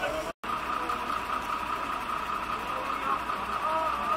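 Steady vehicle engine hum with the faint voices of a crowd of bystanders; the sound cuts out completely for a moment less than half a second in.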